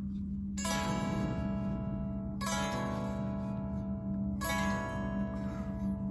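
Telecaster-style electric guitar strumming an open-string B minor nine voicing (7X0659) three times, each chord left ringing for about two seconds. A steady low hum runs underneath.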